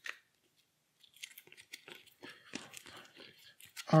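Playing cards being drawn from a deck by hand: a scatter of soft clicks and light rustling of card stock, starting about a second in.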